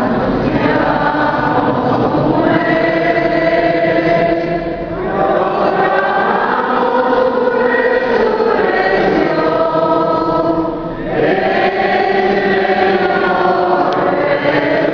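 A group of voices singing a hymn together in long, held phrases, with short pauses for breath about five and eleven seconds in.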